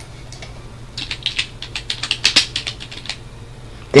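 Typing on a computer keyboard: a quick run of key clicks from about a second in until about three seconds in, entering a name into a text box.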